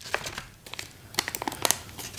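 Packaging crinkling and crackling in irregular bursts, busiest a little past halfway: a small yellow envelope is torn open and the receiver inside, in its clear plastic bag, is drawn out.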